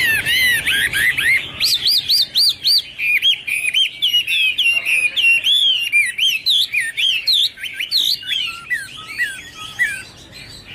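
Chinese hwamei (Garrulax canorus) singing a loud, continuous, varied song of rapid whistled notes, often repeating the same note three or four times before switching to a new one.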